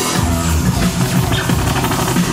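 Loud electronic dance music from a DJ set over a club sound system, with a deep bass line that comes back in right at the start.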